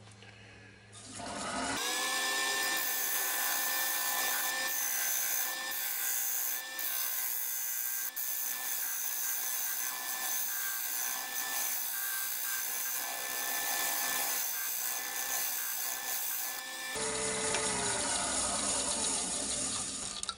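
A wood lathe motor starts about two seconds in and runs at a steady pitch, while a turning tool scrapes into the centre of a spinning oak platter to cut a small recess. Near the end the motor is switched off and runs down.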